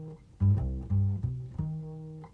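Background music: a plucked bass playing a line of single low notes, about four of them, each dying away before the next.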